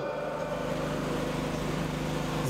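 Steady hum of idling vehicle engines with traffic noise, holding several low, unchanging tones.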